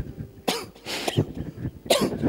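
A man coughing, about four short coughs in a row.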